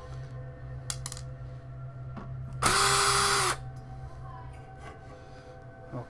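Black & Decker cordless drill-driver running in one burst of about a second at a steady pitch, driving out a screw.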